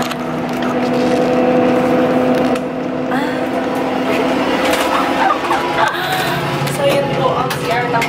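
Steady drone of a moving bus heard from inside its small onboard toilet. About halfway through, a woman's voice laughing and exclaiming without words comes over it, with a few sharp clicks.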